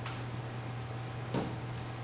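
Quiet room tone: a steady low hum with a couple of brief clicks, one at the start and one about a second and a half in.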